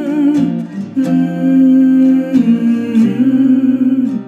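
Lullaby music: a woman humming the melody in long held notes over a gently plucked acoustic guitar.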